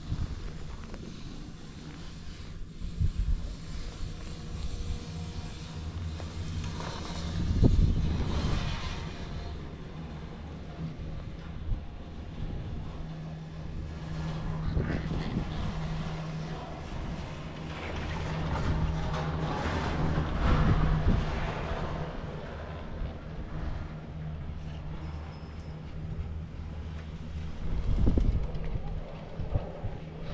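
Riding a Doppelmayr detachable chairlift: a steady low hum under wind noise, which swells into louder rushing several times.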